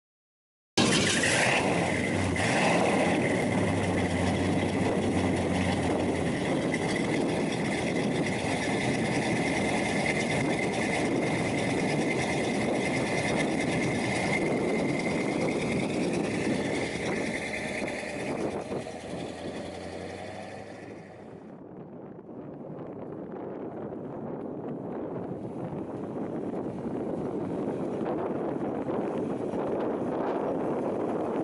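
1970 Pontiac GTO's 400 cubic-inch (6.6-litre) V8 with Edelbrock intake and carburettor, running steadily through its Flowmaster exhaust, heard close to the tailpipes. About two-thirds of the way through it fades, then grows louder again as the car approaches.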